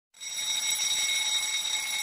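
Countdown timer's alarm sound effect going off as the timer reaches zero, signalling that time for the activity is up: a steady, high-pitched ringing tone that starts a moment in.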